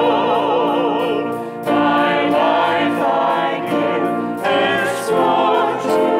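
A man singing a hymn with vibrato, backed by a choir and accompaniment, in phrases with short breaks about a second and a half in and again past four seconds.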